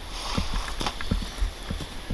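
Footsteps on dry, sandy ground, about three steps a second.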